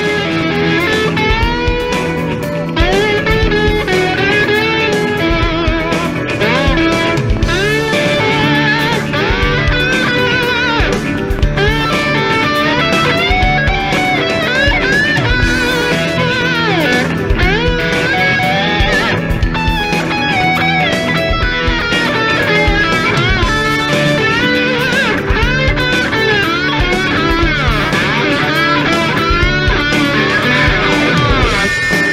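Electric guitar music: a lead line full of string bends and sliding notes over steady low bass notes, running without a break.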